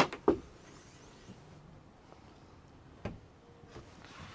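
Sharp clunks as a semi truck's sleeper bunk is unlatched and lifted open: two close together at the start and a smaller one about three seconds in.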